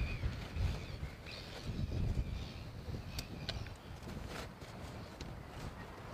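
Wind buffeting outdoor microphones in uneven gusts, a low rumble that rises and falls, with a few faint high chirps.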